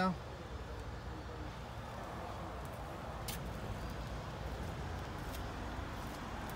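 Steady hum of road traffic on a nearby road, with a faint click about three seconds in.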